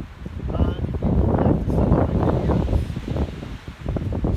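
Wind gusting across the microphone, swelling about half a second in and easing off near the end.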